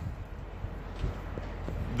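Low, steady outdoor rumble and hum, with a faint click about a second in.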